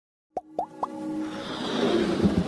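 Logo-intro sound effects: three quick cartoon-like plops about a quarter second apart, each a short upward blip, followed by a musical swell that grows steadily louder.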